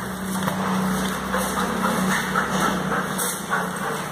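A steady low motor hum that fades out near the end, with light footsteps on stairs.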